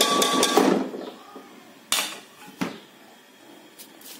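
A ceramic plate scraping over the rim of a metal pressure-cooker pot as chopped green coriander is tipped into cooked dal, followed by two sharp knocks about two and two and a half seconds in.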